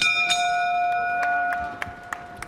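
Boxing ring bell struck to end the round: a sudden clang and a second strike just after, ringing on for about a second and a half.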